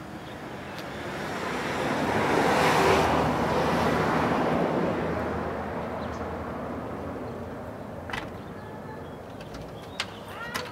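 A vehicle passing by: a broad rush of noise that swells to its loudest about three seconds in and fades away over the next few seconds.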